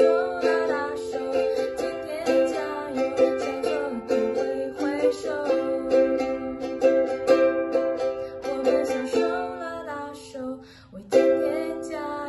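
Ukulele strummed in a steady rhythm, with a woman singing along to it. The playing thins out briefly just before the end, then the strumming picks up again.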